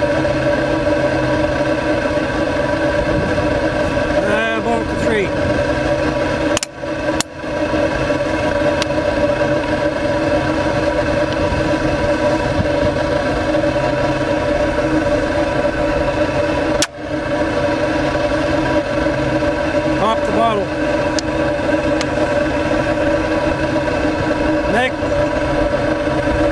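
Steady, loud droning hum of the running flame-and-exhaust-pipe rig, holding several fixed tones. The sound drops out briefly twice, once about seven seconds in and again near the middle.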